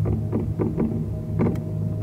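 A fireworks barrage going off: a quick, irregular series of muffled bangs, about seven or eight in two seconds, over a steady low rumble.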